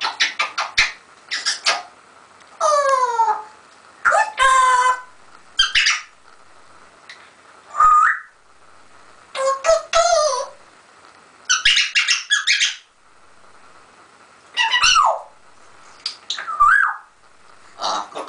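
African grey parrot calling in bursts with short pauses between: a run of rapid clicks near the start, then falling and rising whistled calls and some harsher calls.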